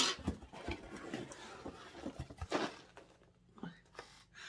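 A cardboard mailer box being opened by hand: the flaps are pulled open and the cardboard and packaging rustle and crinkle, with a sharp sound at the start and irregular rustles and clicks that die down after about two and a half seconds.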